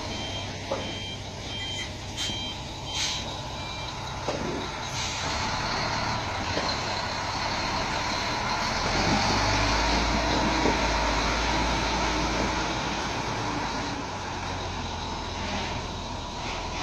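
Reversing beeper on a B-double (Superlink) truck, beeping steadily for about the first three seconds and then stopping, with a few short hisses of air among the beeps. The truck's diesel engine then runs louder under load with a deep rumble, strongest in the latter half before easing off near the end.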